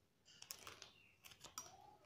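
Faint clicking and rustling of plastic craft wire as strands are handled and threaded through the weave by hand, in two short flurries of clicks.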